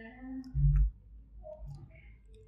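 Mouth noises of a person eating: small wet clicks and lip smacks, with a short low hum from the throat about half a second in.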